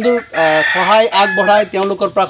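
A rooster crowing, a single call of about a second near the start, overlapping a man's voice.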